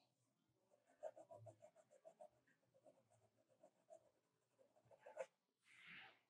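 Faint pencil strokes on drawing paper: a quick run of short shading strokes, about five a second, in the first couple of seconds, then scattered lighter strokes.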